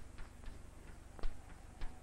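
Chalk tapping and clicking against a blackboard as strokes are drawn: about five short, faint clicks, the loudest a little past a second in.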